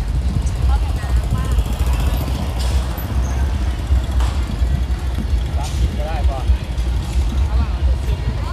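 Steady low rumble of outdoor street noise with passing vehicles, and faint voices of people nearby twice.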